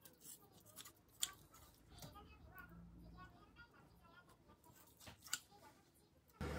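Kitchen shears snipping raw rib meat to trim off membrane and fat: a few faint, crisp snips, the sharpest just over a second in and another near the end.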